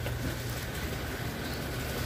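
A steady low rumble with no clear events.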